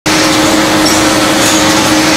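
Packaging conveyor line running, a steady mechanical hiss with an even hum.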